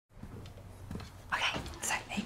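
Whispered speech, a few breathy syllables about halfway through and again near the end, over low room tone.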